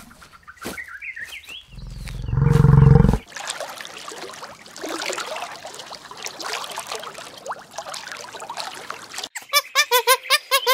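A Cape buffalo gives a loud, deep bellow about two seconds in, with a few short chirping calls just before it. It then cuts to a soft, steady trickling, bubbling water sound for most of the remaining time. Near the end a rapid, evenly spaced series of short calls begins.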